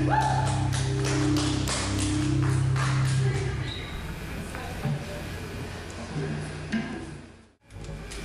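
Live metal band ending a song: electric guitars and bass hold a final chord under a run of drum and cymbal hits, then let it ring out and die away. The sound cuts off just before the end.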